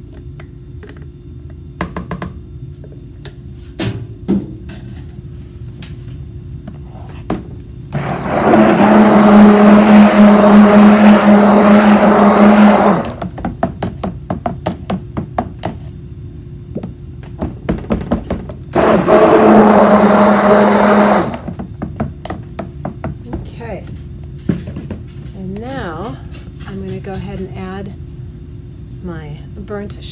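Immersion stick blender running in soap batter in two bursts, about five seconds and then about two and a half seconds, blending banana puree into raw cold process soap batter. Light knocks and taps come between and around the bursts.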